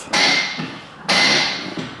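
Two bursts of hissing, one right at the start and one about a second later, each starting sharply and fading away, with a faint high tone running through them. Faint voices sound underneath.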